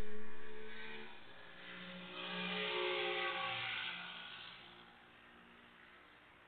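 Jet engine noise from a Boeing 747-400 freighter climbing away after takeoff: a distant, wavering roar with a faint hum of engine tones. It swells again briefly and dies away to near silence near the end.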